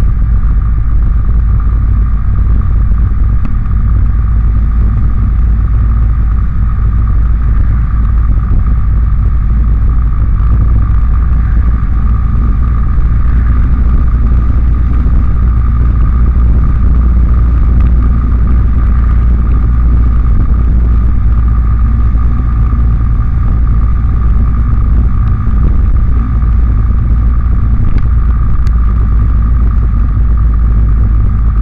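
Steady wind noise over the microphone of a camera mounted on a moving motorbike, with the bike's engine running at an even pace underneath.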